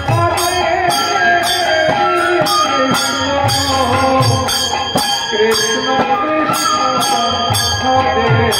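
Bengali kirtan music: a khol drum and kartal hand cymbals keep a steady beat, about two cymbal strikes a second, under a wavering melody.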